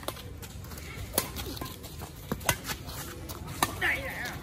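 Badminton rackets hitting a shuttlecock back and forth in a rally: sharp pops about every second and a bit, against a low background rumble. A voice calls out near the end.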